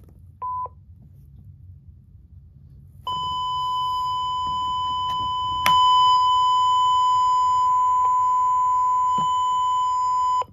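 Fisher-Price Linkimals peacock toy in test mode sounding electronic test beeps through its small speaker: a short beep, then about three seconds later a long steady beep on the same pitch that gets louder with a click partway through and holds on.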